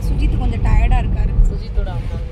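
Steady low rumble of a car on the move, heard from inside the cabin, with a few spoken sounds from passengers over it in the first second.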